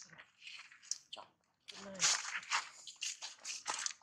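Irregular dry crunching and crackling, typical of a macaque chewing food, with a short voice sound about halfway through.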